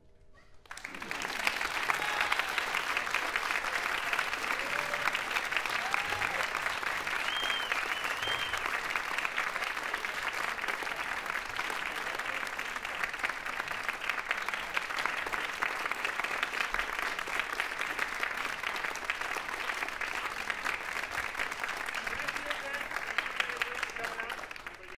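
Concert audience applauding, breaking out about a second in after a brief hush and then continuing steadily, with a few cheers from the crowd.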